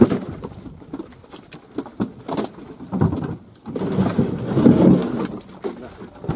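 A heap of live catla fish flapping and slapping against one another, with a low coo-like croaking sound about four to five seconds in.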